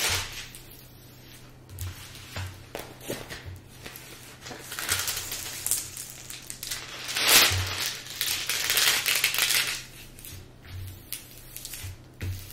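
Clear plastic protective film on a diamond-painting canvas crinkling and rustling as hands lift it and smooth it down, in several bursts, the loudest a little past the middle.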